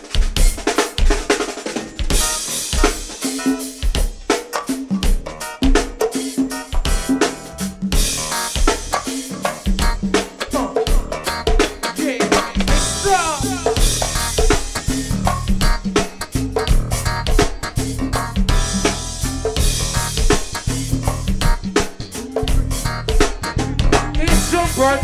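Live go-go band playing, led by the drum kit: snare, rimshots and kick drum, with cymbals above them. A heavier bass part fills in from a little past halfway.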